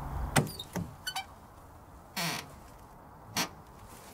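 A car's idling engine cuts out just as it begins. Then come several sharp metallic clicks, like keys and the door latch, and two short knocks and rustles as the car door is opened and the driver climbs out.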